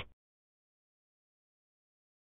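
Near silence, a dead digital pause, after the last syllable of a synthesized voice ends right at the start.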